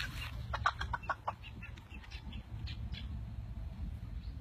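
Chicken clucking: a quick run of about five short calls about half a second in, then a few fainter ones, over a steady low rumble.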